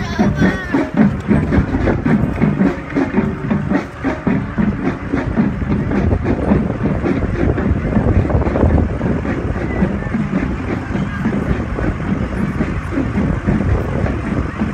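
Parade street noise: voices and music in the first few seconds, fading into wind on the microphone and the low running of the approaching parade vehicles, a pickup towing a float.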